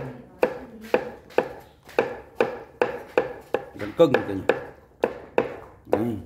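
Cleaver chopping on a cutting board in a steady rhythm, about two strokes a second: meat being minced for tiết canh, Vietnamese raw blood pudding.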